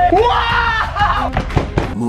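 Young men shouting excitedly over tense background music, the voice rising in pitch in the first second; the music cuts off abruptly at the end.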